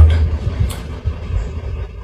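A pause in a man's speech, filled by a faint low rumble of background noise. His voice trails off at the very start, and a short hiss comes under a second in.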